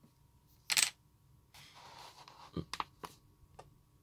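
Handling noise from a fountain pen and a paper notebook. One sharp rustle or knock comes a little under a second in, then about a second of rustling, then a few small clicks.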